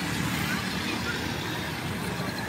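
Motorcycle engines running steadily in street traffic, a low even hum.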